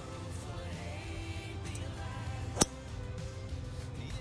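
Background song playing, with a single sharp click about two and a half seconds in: a golf club striking the ball off the grass.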